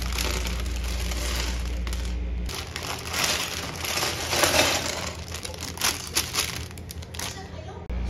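Clear plastic LEGO parts bag crinkling as it is handled and opened, with light irregular clicks of small plastic pieces spilling out.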